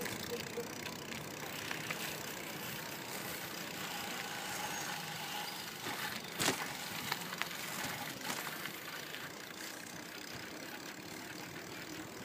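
Bicycle riding from asphalt onto a dirt woodland path, a steady rolling noise of tyres and movement, with a few sharp knocks or rattles about halfway through.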